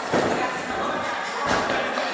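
A tumbler's bare feet thudding on a carpeted sprung gymnastics floor as he runs and takes off into a flip: one thud just after the start and another about a second and a half in.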